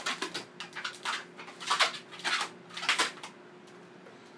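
A latex 260 modelling balloon squeaking in a series of short, irregular squeaks as it is twisted and rubbed by hand into a friction-held pinch twist at its end.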